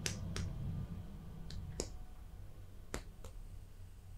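Fingers palpating a bare back, making sharp light taps on the skin. The taps come in pairs about every second and a half, over a low rumble that fades after the first second.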